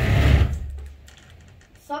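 A loud burst of rumbling noise, loudest at the start and dying away by about a second in, then faint room tone.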